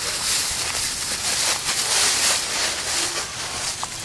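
Footsteps shuffling and running through a thick layer of dry fallen leaves, a continuous crunching rustle that swells and fades with each stride.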